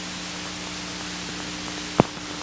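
Steady hiss with a faint low hum, the noise floor of an old videotape recording of a television broadcast, with one brief click near the end at a splice between commercials.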